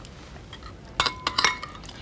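A spoon clinking a few times against china crockery at a breakfast table, with short, bright ringing tones, about a second in.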